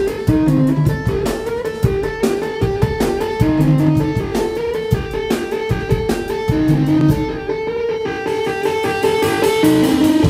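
Live instrumental rock: an electric organ playing a repeating melodic figure over a steady drum-kit beat, with a low bass line underneath. The cymbals drop out briefly near the end.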